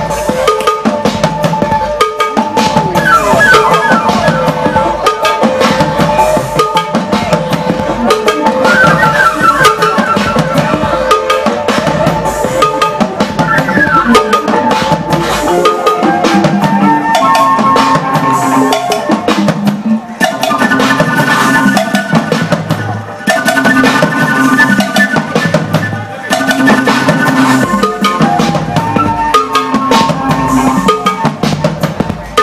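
Live flute and drum kit duo playing: a flute melody of held notes and quick runs over a steady drum beat.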